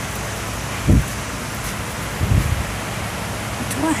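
Steady hiss of background noise picked up by a handheld phone microphone, with two low muffled thumps from the phone being handled, about one second and two and a half seconds in.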